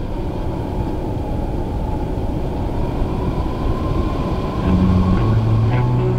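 A superstock dirt-speedway race car's engine running with a loud, rough, steady rumble and a faint steady whine above it. Music starts to come in near the end.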